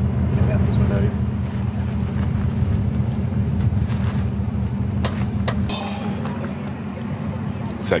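A low, steady engine rumble with faint voices over it; the rumble eases somewhat in the last couple of seconds.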